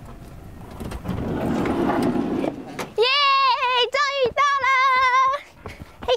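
A woman's high-pitched voice in a few drawn-out, wavering sing-song phrases, starting about halfway in and ending shortly before the end. Before it comes a rush of noise that swells and fades.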